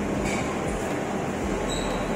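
Steady background noise of a shop floor, an even hum and hiss with no distinct events.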